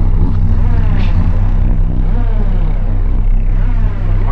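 A loud, steady low mechanical hum, with a higher tone that sweeps down and back up every second or so.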